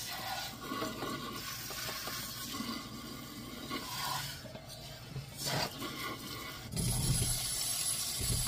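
Tap water running into a stainless steel sink while a sponge scrubs a utensil during hand dishwashing, with small scrapes and clinks; the water gets louder about seven seconds in.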